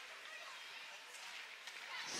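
Faint ice hockey rink sound during live play: a low murmur of spectators with a few faint clicks.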